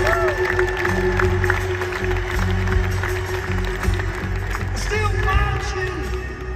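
A live rock band playing a slow ballad in an arena, heard from the audience. Drums and bass run under a long held note, with crowd voices in the background.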